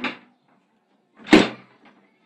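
Metal bolt of a wooden door drawn back and the door pulled open, with one sharp clack a little past halfway and a small click just after.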